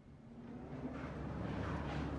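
A low vehicle-engine rumble growing steadily louder.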